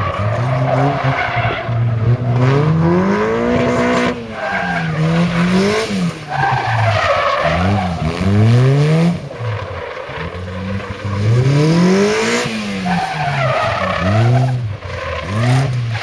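Raw Striker kit car's engine revving up and dropping back over and over as the car accelerates, brakes and changes direction in quick succession, with tyres skidding and squealing on the tarmac through the tight turns.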